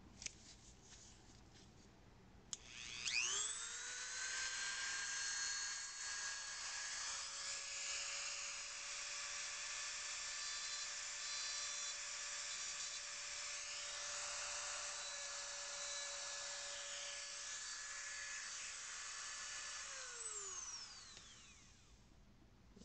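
Handheld rotary engraving tool scribing a serial number into a chip carrier. A click about two and a half seconds in, then the motor spins up to a steady high whine and runs for about seventeen seconds. It winds down and stops near the end.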